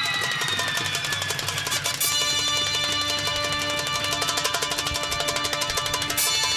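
Lively music from a band, with fast, even hand-drum strokes, a falling tone in the first two seconds, and held notes joining in after about two seconds.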